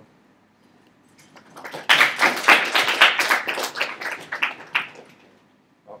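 A class audience applauding, building up about a second and a half in and dying away around the five-second mark.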